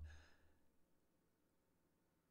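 Near silence, with a faint out-breath fading away in the first half second.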